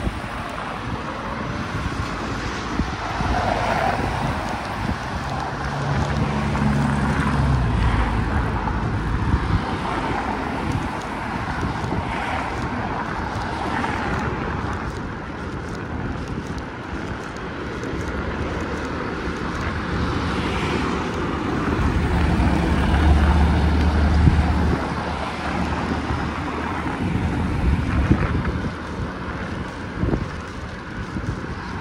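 Motor traffic on a busy main road passing close by, heard over wind noise on the microphone of a moving bicycle. The traffic swells louder and deeper twice, about six seconds in and again a little past twenty seconds, as vehicles go by.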